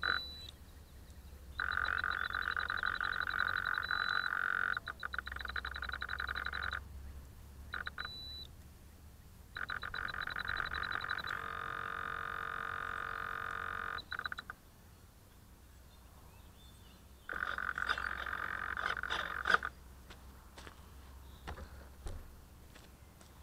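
Frogs calling in long pulsed trills, several of them each lasting a few seconds, with quiet gaps between. A few sharp clicks come near the end.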